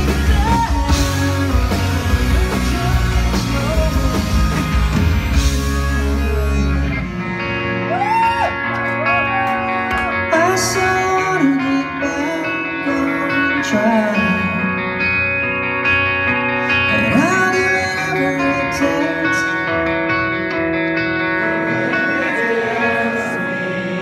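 Rock band playing live with singing: full band with drums and bass until about seven seconds in, then the low end drops away, leaving held guitar chords under the sung vocal.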